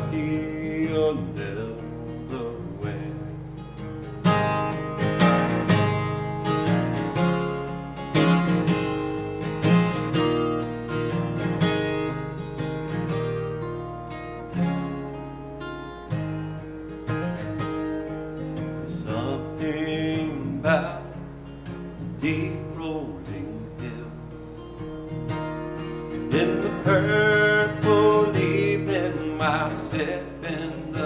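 Steel-string acoustic guitar strummed steadily in a folk-country song, with a man's voice singing in places, most clearly in the last few seconds.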